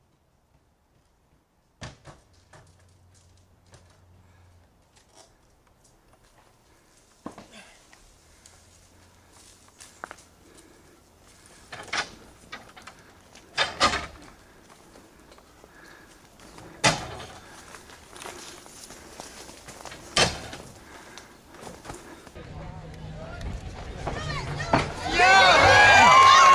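Scattered sharp knocks and thuds, a few seconds apart, from a person climbing and hanging on homemade wooden obstacles. Near the end a crowd's shouting and cheering comes up loud.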